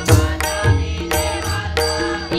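A devotional bhajan: a boy's solo voice singing a melismatic line, accompanied by hand drums striking about twice a second.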